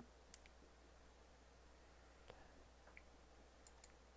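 Near silence with several faint computer mouse clicks spread through, some in quick pairs, over a faint steady low hum.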